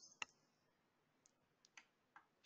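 Near silence over a call line, with one sharp click a fifth of a second in and a few faint ticks later.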